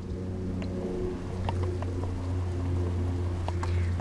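An engine idling steadily, with a few faint light ticks over it.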